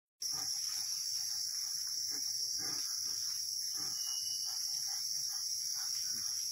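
Steady, high-pitched chorus of forest insects, an unbroken drone that is the loudest sound, with faint scattered rustling beneath it.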